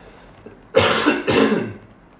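A man coughing twice in quick succession about a second in.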